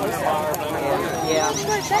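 People talking over a herd of Chincoteague ponies and riders' horses moving past on the sand.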